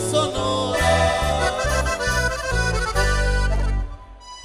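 A live norteño band playing the closing instrumental bars of a corrido: accordion melody over a moving bass line. The band stops just before the end.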